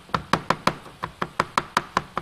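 Chef's knife chopping garlic cloves on a plastic cutting board: a steady run of quick, evenly spaced knocks, about six a second.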